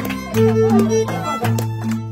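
Andean harp and violin playing a carnival tune together. The violin carries the melody over the harp's plucked strings, with deep harp bass notes struck about once a second.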